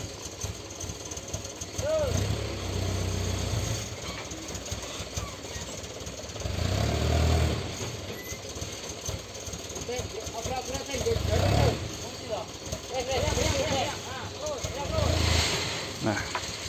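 Light dump truck's engine running with four surges of revving, a few seconds apart, as its hydraulic tipper bed is raised to tip out a load of oil palm fibre. Indistinct voices are heard between the surges.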